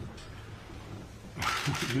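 Indoor room tone with a steady low hum during a pause in talk. About one and a half seconds in there is a short, loud hiss-like rush of noise, and a man's voice starts just at the end.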